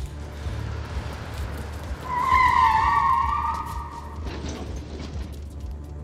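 Car tyres screeching loudly for about two seconds, starting about two seconds in, as a car speeds toward the camera, over a steady low rumble and film score.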